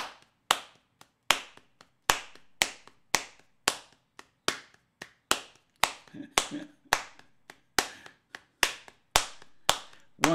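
Hands slapping the thighs and clapping in a steady hand-jive rhythm, about two sharp hits a second with some hits louder than others, marking out the beats of a time signature.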